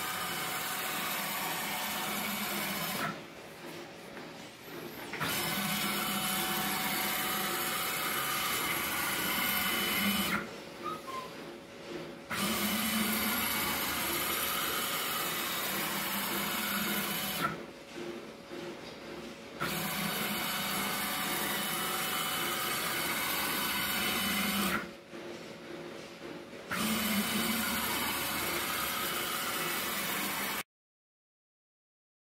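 Stepper motor driving a ball-screw X-slide loaded with 4 kg at a 75 mm/s feed: a steady mechanical whirr as the carriage runs along the screw. It comes in strokes of about five seconds, with four pauses of about two seconds where the slide stops and reverses.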